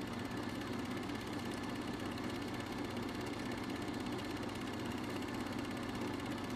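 A steady low drone with a hum of steady low tones beneath it, even in level throughout.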